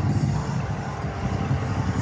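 Steady low rumble of a fairground ride's machinery running.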